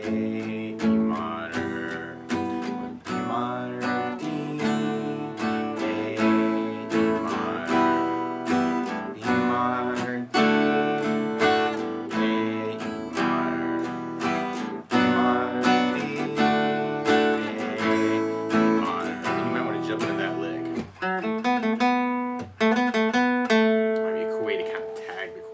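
Acoustic guitar strumming the chorus chord progression, B minor, D, A and E minor, with the chords changing every couple of seconds. Near the end the strokes come quicker.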